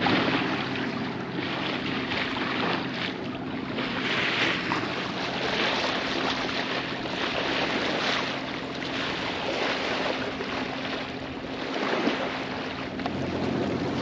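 Water rushing and splashing along a sailboat's hull as it moves, with wind on the microphone. The noise rises and falls gently over a steady low hum.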